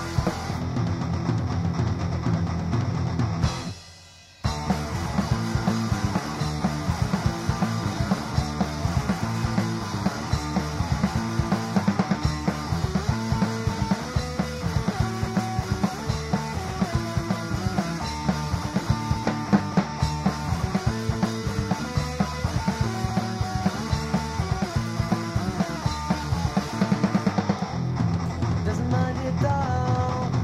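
Instrumental passage of a three-piece punk rock band playing electric guitar, bass and drums, with no vocals. The band stops for about half a second some four seconds in, then comes back in.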